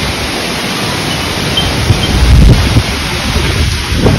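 Wind buffeting a phone microphone outdoors: a loud, steady rush with gusty low rumble that swells about halfway through.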